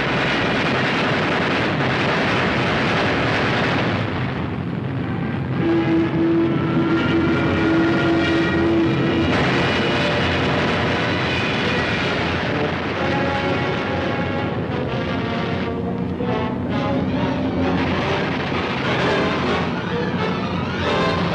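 Film soundtrack music over a dense, steady roar of aircraft engines. From about six seconds in, sustained musical notes sound clearly above the engine noise, including one long held note.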